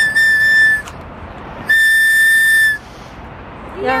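A small handheld whistle blown in two steady, shrill toots of about a second each, with a short pause between them.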